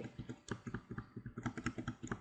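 Computer keyboard keys tapped in quick, irregular succession, several light clicks a second.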